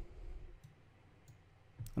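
A few faint, scattered computer mouse clicks while the Multi-Cut tool places a cut.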